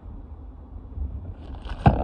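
Low wind rumble on the microphone with handling noise. Near the end there is a brief rustle of plastic packaging and one sharp knock as the mains charger is put down.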